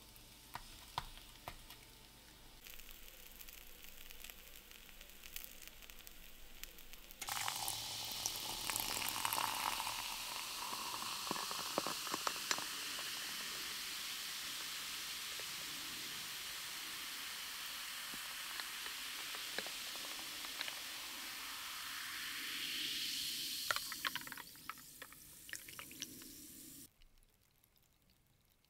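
A tortilla sizzles faintly in a frying pan. About seven seconds in, dark soda is poured into a glass: a long, steady fizzing pour whose pitch rises as the glass fills. It ends in crackling fizz around the ice cubes and cuts off just before the end.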